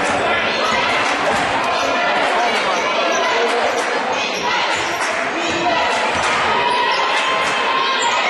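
A basketball bouncing on a hardwood court during live play, against a steady background of voices from the spectators and players.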